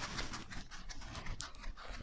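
Whiteboard eraser scrubbing back and forth across a whiteboard in a quick, uneven run of short rubbing strokes.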